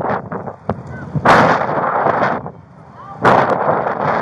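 Two loud rushing bursts of noise on a body-worn camera's microphone, each about a second long and starting about two seconds apart.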